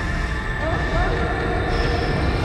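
Tense, dissonant film score: sustained held tones over a dense low rumble, with short rising glides about half a second and a second in.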